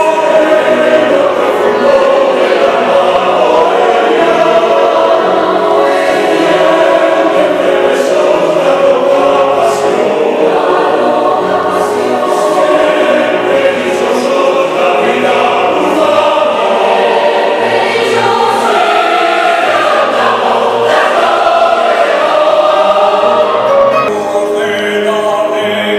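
Mixed choir singing a zarzuela chorus in Spanish, full-voiced and sustained, with piano accompaniment underneath.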